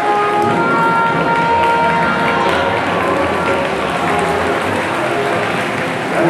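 The last held notes of salsa dance music fade out, and audience applause takes over about two and a half seconds in.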